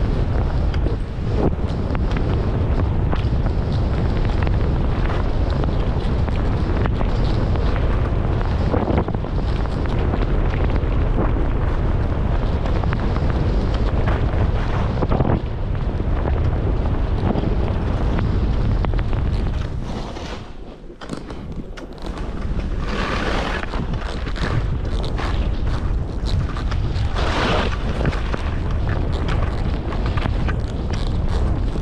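Wind buffeting the microphone of a skier's camera during a downhill run, a steady rumble over the hiss of skis sliding on snow. It eases briefly about two-thirds of the way through, then two louder hissing surges follow near the end.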